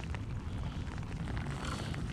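Steady rushing noise of wind and light rain on a small action camera's microphone, with faint rustling of rain-jacket sleeves.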